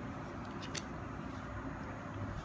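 Faint handling of Animal Kaiser trading cards: a couple of soft clicks as a card is laid down on a tile floor, over steady low room noise.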